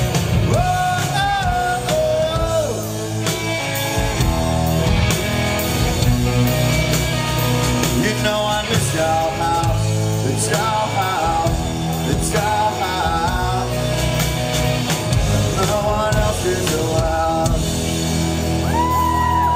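Live punk rock band: distorted electric guitar and drum kit driving along while a man sings a melody over them, heard from the audience in a hall.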